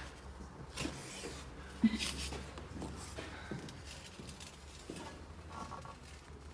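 Faint rustling and a few light clicks and knocks from ceramic tiles and their packaging being handled, over a low steady hum.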